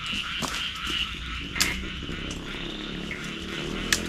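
Night chorus of frogs and insects: a steady high trill over low rustling, broken by two sharp clicks, one about one and a half seconds in and one near the end.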